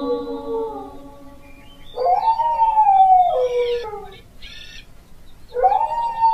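Dog howling: long pitched howls that each slide down in pitch, one trailing off about a second in, a second from about two to four seconds, and a third starting near the end.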